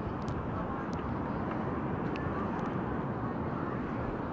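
Steady wind rushing over the microphone, an even low roar.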